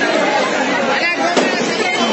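Dense crowd of many voices shouting and chattering over one another, with one sharp crack a little past the middle.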